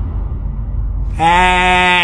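A low boom dies away, and about a second in a quavering, bleat-like cry sounds for about a second.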